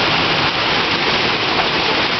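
Heavy hail falling on the street and ground, a steady dense hiss.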